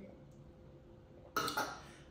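A woman's short, sudden throaty vocal sound right after a gulp of wine, coming about a second and a half in after a quiet stretch.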